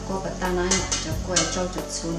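A utensil clinking and scraping against stainless steel mixing bowls as steamed sweet rice is stirred, several sharp clinks, over background music.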